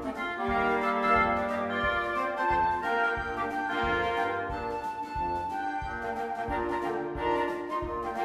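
A woodwind quintet of flute, oboe, clarinet, horn and bassoon plays a melodic arrangement with sustained and repeated notes. A steady drum-kit beat runs underneath.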